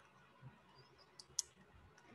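Near silence broken by two faint, short clicks a fraction of a second apart, about a second and a quarter in.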